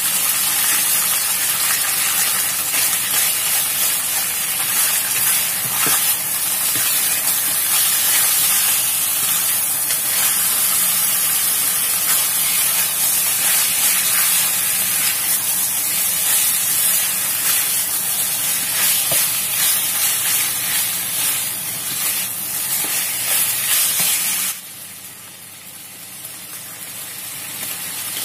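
Beef short ribs with garlic and chopped peppers sizzling in a hot wok as they are stir-fried with a spatula, a steady hiss. About three and a half seconds before the end the sizzle drops suddenly to a much fainter hiss.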